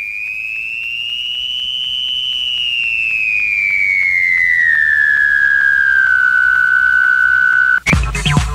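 A single pure electronic tone, alone after the dance music drops out: it rises a little, then glides slowly down over several seconds while growing louder, and the house beat cuts back in at the very end.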